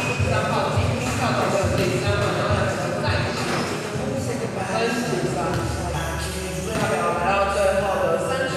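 Voices of players and onlookers calling out during a basketball game, with low dull thuds of ball and feet on the court about twice a second in the first few seconds.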